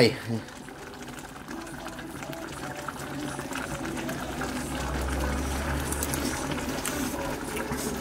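A pot of thick, sweet brown sauce boiling on the stove, a steady bubbling that slowly grows louder.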